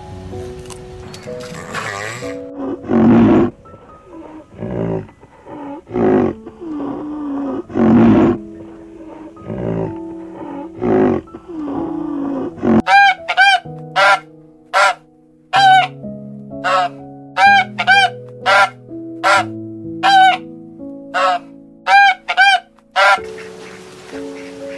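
Soft piano music with loud animal calls laid over it. In the first half come several rough, drawn-out calls a second or two apart. From about halfway there is a quick run of about a dozen short, nasal honking calls.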